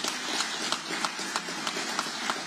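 Audience applauding in a hall, a steady patter of clapping with single claps standing out.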